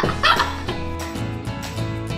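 Light background music with steady sustained notes. A child's brief high laughter comes in the first half second.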